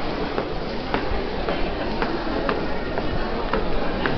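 Commuter crowd walking through a tiled station concourse: a steady hubbub with footsteps clicking on the hard floor about twice a second.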